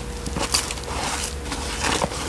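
Scattered light rustles and soft knocks of a succulent and its pot being handled during repotting, a few separate touches over a faint steady hum.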